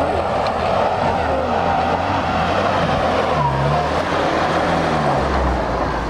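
UAZ off-road vehicle's engine running under load as it climbs through grass, coming close near the end.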